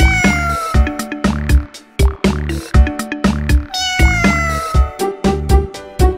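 A cat meow twice, each a drawn-out call falling in pitch and lasting about a second, one at the start and one near four seconds in, over a bouncy children's song intro with a steady drum beat.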